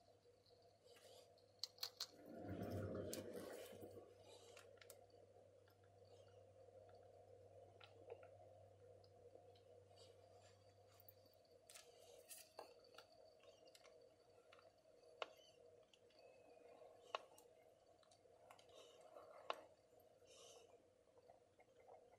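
Near silence: faint room hum with scattered small clicks and taps from handling ink swatching tools on paper, and a short louder rustle about two seconds in.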